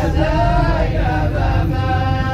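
Background music of vocal chanting: several voices holding long notes that slide between pitches, over a steady low drone.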